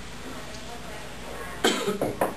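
A man coughing: one sudden, loud cough near the end, against low room noise.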